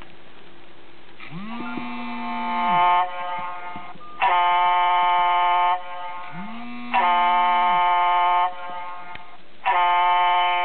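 A mobile phone ringing: a vibration buzz that spins up, holds and dies away alternates with a steady electronic ring tone about a second and a half long, the cycle repeating every two and a half to three seconds.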